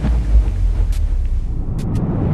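A loud, deep, steady rumble with a hissy noise over it: a boom-like sound effect under an animated intro title.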